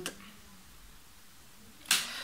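Near silence with faint room tone after a spoken word ends. Near the end comes a sudden short noise burst, where the recording resumes after an edit.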